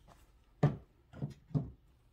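Three short knocks or bumps: the first, a little over half a second in, is the loudest, and two softer ones follow about a second later.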